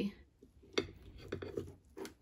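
Metal forks clinking and scraping against ceramic plates as they cut through poached eggs; the run of sharp clinks starts a little before halfway.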